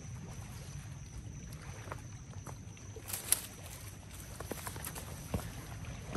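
Water lapping at the river's edge over a steady low rumble of wind, with scattered small clicks, a brief sharp tick with a hiss a little past halfway, and another tick near the end.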